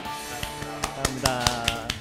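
A small group of people clapping, irregular scattered claps, over background music.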